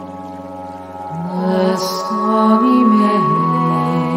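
Slow, ambient music: several held tones slide slowly between pitches over a steady low drone, swelling louder about a second in.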